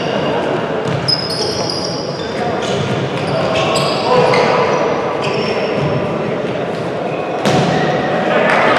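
Indoor futsal game on a sports-hall court: shoes squeaking on the floor, the ball being kicked, with a sharp kick about a second in and a louder one near the end, and players calling out, all echoing in the large hall.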